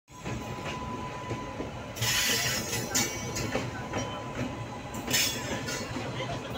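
Trains running side by side: a steady rumble of steel wheels on rail. Louder clattering bursts come about two seconds in, again at three seconds, and near the end.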